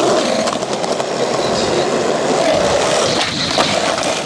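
Skateboard wheels rolling on a concrete skatepark surface: a steady rough rumble.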